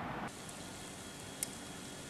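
Faint, steady background hiss of ambient noise, with a single short tick about one and a half seconds in.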